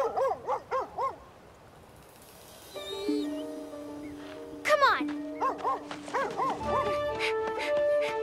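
Cartoon rough collie barking: a quick run of about four barks, a pause, then a high rising yelp and another run of barks. Background orchestral music comes in partway through.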